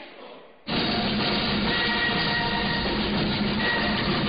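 A school band's music starts suddenly and loudly less than a second in, after a short faint stretch, and plays on at a steady level: the band's hymn for the technical secondary schools.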